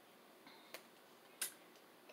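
Near silence broken by two faint, sharp clicks about two-thirds of a second apart, from tarot cards being drawn off the deck and handled.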